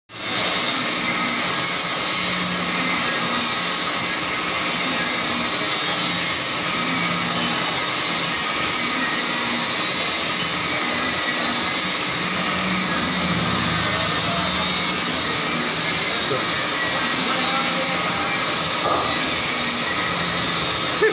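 Large engine lathe running steadily while turning a heavy cast-iron sugar cane mill roll, a continuous even machine noise with a hum underneath.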